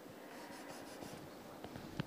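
Faint scratching of chalk on a chalkboard as a line is drawn, mostly in the first second.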